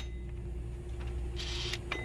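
Quiet steady low background hum with a faint steady tone above it, and a brief faint hiss about one and a half seconds in.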